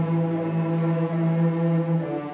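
A group of cellos playing together, bowing one long held note that moves to a new note at the very end.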